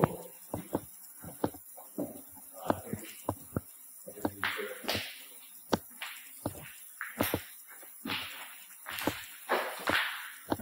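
Footsteps on a gritty stone tunnel floor: irregular sharp steps with a few short scuffs, about one or two a second.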